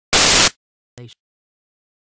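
A short, loud burst of static, followed about a second in by a much fainter, briefer crackle.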